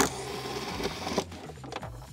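Cordless drill-driver with a T30 Torx bit whirring as it backs out a door-panel screw. The motor runs for about a second, then drops off.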